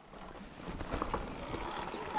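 Sur-Ron electric dirt bike rolling over wet grass and mud: tyre noise with short knocks and rattles from the bike over bumps. It starts quiet and builds after about half a second.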